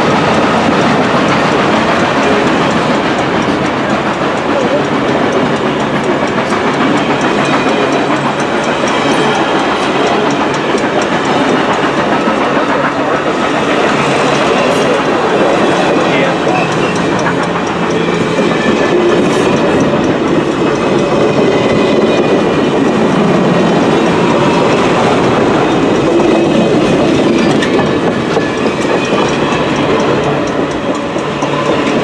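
Reading & Northern passenger cars rolling past close by, their steel wheels running loud and steady on the rails.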